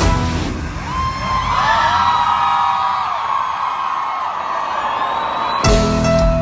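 A concert crowd screaming and whooping, many voices gliding up and down, after the intro music with its beat drops out just after the start. Near the end the band comes back in with one sudden loud hit and full music with drums and bass.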